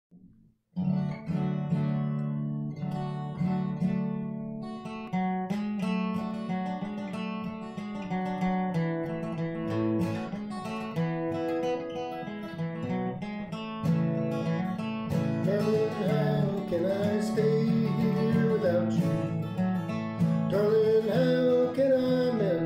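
Martin HD-28 steel-string dreadnought acoustic guitar played with a flatpick in a crosspicking style, starting about a second in. A voice joins in over the guitar from about fifteen seconds in.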